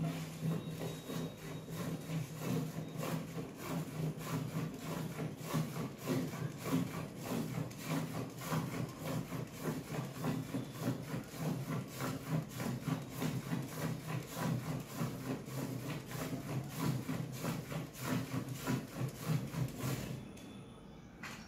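Hand-milking a water buffalo: rhythmic squirts of milk hissing into a steel bucket as the teats are stripped, one stroke after another at an even pace.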